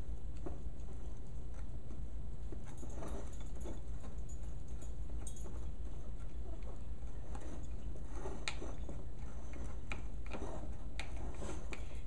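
A utensil clicking and scraping irregularly against a glass mixing bowl as flour, yeast and water are stirred into pizza dough, over a steady low hum.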